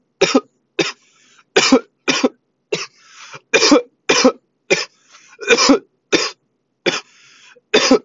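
A man's coughing fit: about a dozen hard coughs in quick succession, roughly two a second, with wheezy breaths in between. It follows a hit of cannabis vapour from a vape cartridge.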